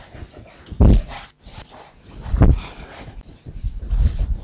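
A whiteboard being wiped clean with a hand-held duster: rubbing and squeaking strokes on the board, with two louder strokes about one and two and a half seconds in.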